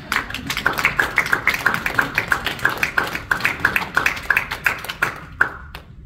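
Small audience applauding, the separate hand claps clearly distinct, thinning out and stopping shortly before the end.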